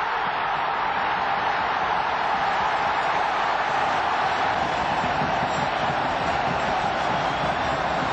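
Large football stadium crowd cheering steadily just after a goal is scored.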